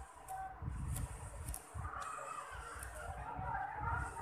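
Homemade toothpaste-and-salt kinetic sand being pressed and cut by hand and with a plastic tool on a tabletop: soft crunching with repeated dull knocks against the table.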